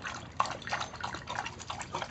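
Two beagle puppies lapping water from a stainless steel bowl: a quick, irregular run of small wet laps.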